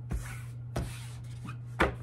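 A tarot card deck being handled on a tabletop: three sharp knocks, the last and loudest near the end, with short rustles of the cards between them.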